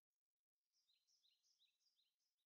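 Near silence, with a run of very faint, short, high chirps in the second half, like a small bird singing.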